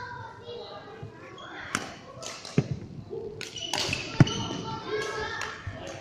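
Badminton play in a large hall: several sharp strikes and thuds from rackets hitting shuttlecocks and feet landing on the wooden court. The loudest comes about four seconds in, over background voices.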